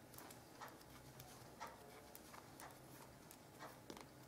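Faint, irregular light clicks of knitting needles as stitches are worked, about three a second.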